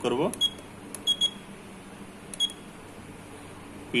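Juki LK-1900A bartack machine's control panel giving short, high beeps as its buttons are pressed: four beeps in the first two and a half seconds, two of them close together, each with a light click of the button.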